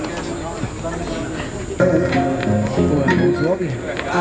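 Hip-hop instrumental beat from the DJ's sound system kicks in suddenly about two seconds in, with a bass line stepping from note to note, over the murmur of the crowd and a man's short vocal 'ah, ah'.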